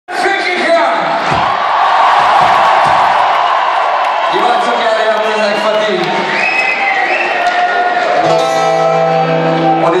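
Live concert crowd in a large hall cheering and shouting, with a rock band's music under it. About eight seconds in, the band strikes a held chord.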